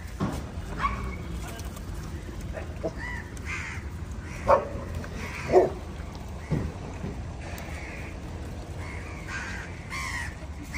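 Crows cawing off and on, short arched calls, with two louder sharp calls near the middle, over a steady low background rumble.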